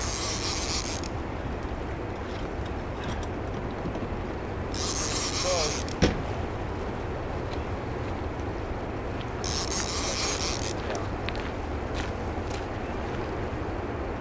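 Fishing reel ratcheting in three bursts of about a second each, at the start, about five seconds in and about ten seconds in, while a large hooked fish pulls on the bent rod. Underneath is a steady low rush of the churning water below the dam, and a single sharp knock comes about six seconds in.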